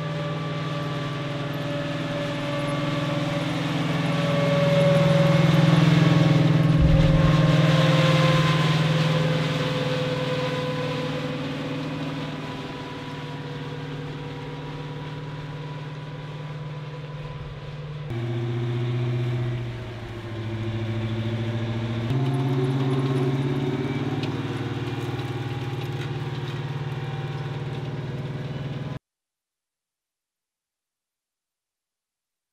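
Bradley-based tracked armored vehicle driving by, its engine running with a whining tone and its tracks rolling. It is loudest a few seconds in as it comes close, where the whine drops in pitch. The sound changes abruptly twice later on and cuts off just before the end.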